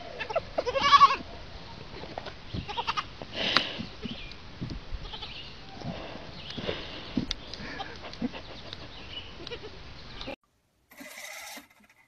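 Young goat kids bleating in short calls, the loudest about a second in and again about three and a half seconds in, over a steady outdoor hiss. The sound stops abruptly near the end, and a brief different sound follows.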